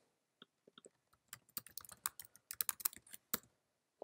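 Typing on a computer keyboard: a few faint key taps, then from about a second and a half in a quick, irregular run of light key clicks that stops shortly before the end.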